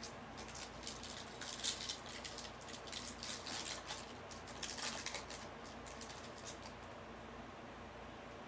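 Trading-card pack's foil wrapper crinkling and tearing open by hand: a quick run of crackly rustles over several seconds, loudest in two spurts, dying away near the end.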